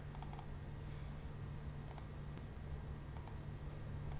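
Computer mouse clicking: a quick cluster of clicks at the start, then single clicks about once a second. A low steady hum runs underneath.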